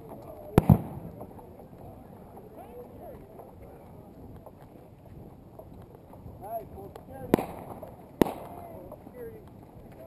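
Four sharp bangs: two close together about half a second in, then one about seven seconds in and another about eight seconds in. Faint distant voices run underneath.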